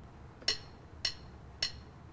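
Casio CDP-200 digital piano's count-in click: three short, sharp clicks at an even beat about half a second apart, counting in the song that the keyboard is about to play back in Listen mode.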